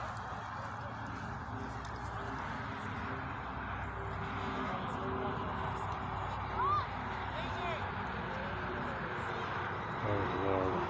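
Distant voices of players and spectators calling out across a soccer field over a steady outdoor background noise, with one short, louder call about two-thirds of the way through.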